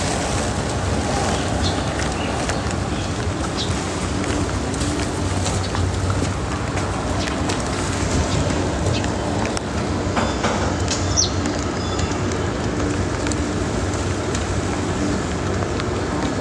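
Steady rain falling, with a faint low hum underneath and scattered light taps.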